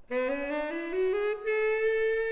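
Music: a solo wind instrument plays a rising run of notes, climbing step by step, then holds one long high note from about one and a half seconds in.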